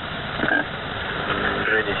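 Shortwave radio static and hiss on The Pip's 3756 kHz channel in a short pause of the operator's voice message, with the male voice coming back in near the end.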